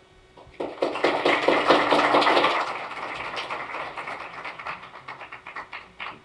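Audience applauding, starting about half a second in, loudest over the next two seconds and then dying away.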